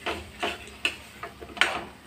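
A steel spoon knocking and scraping against a kadai while stirring a thick spice paste, about five knocks roughly two or three a second.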